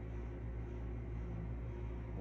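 Steady low hum with a faint even hiss underneath: room tone, with no distinct event.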